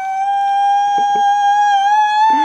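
A woman's long, high-pitched squeal of excitement, held on one steady note after a short upward slide.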